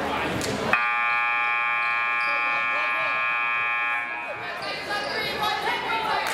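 Gym scoreboard buzzer sounding one steady blast of about three seconds, starting just under a second in and cutting off suddenly, over crowd chatter in the bleachers. It marks the end of a timeout, with the players leaving the bench huddle for the court.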